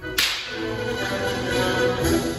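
Orchestral music for a Gopak dance, with a sudden sharp crash a fraction of a second in that rings away while the orchestra plays on.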